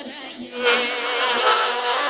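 Music from a medium-wave AM broadcast coming through the small speaker of a Tecsun portable radio tuned to 1440 kHz, thin and narrow in tone. It gets clearly louder about half a second in.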